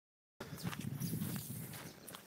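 Footsteps of someone walking over grassy ground: an irregular run of short crunches and thuds over a low rumble on the microphone. The sound starts abruptly just under half a second in.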